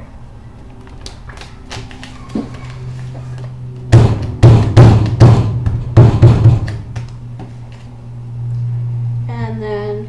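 Hands creasing a folded paper airplane by pressing it against a tabletop with the fists, giving a run of loud knocks and thumps about four seconds in that lasts some three seconds. A steady low hum runs underneath.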